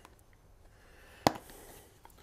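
A single sharp click about a second in, over quiet room tone: the plastic cap of a garlic powder shaker being snapped open.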